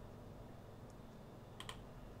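Quiet room tone with a quick pair of faint clicks from a computer mouse about one and a half seconds in.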